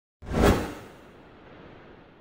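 Whoosh sound effect of an animated logo intro: a quick swell that peaks about half a second in and dies away within the next half second, leaving a faint hiss.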